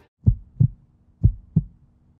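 Heartbeat sound effect: two deep double thumps (lub-dub), the pairs about a second apart, over a faint steady hum.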